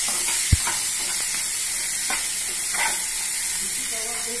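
Chickpeas, tomatoes and onions sizzling steadily in a kadai while a metal ladle stirs them, scraping the pan a few times, with one sharp knock about half a second in.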